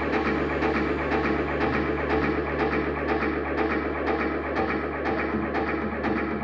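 Live psychedelic rock band playing loud and steady: a dense, droning wall of amplified instruments over drums keeping a regular, repetitive beat.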